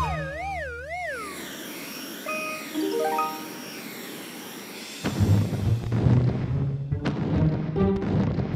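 Cartoon sound effects over background music: a wobbling, warbling tone that slides down in the first second, a quick rising run of notes a couple of seconds later, then a loud low rumble with a few sharp clicks from about five seconds in.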